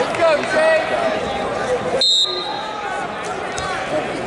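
Shouting voices of coaches and spectators in a gym, with one short, steady, high whistle blast about halfway through: the referee's whistle restarting the wrestling bout after an out-of-bounds reset.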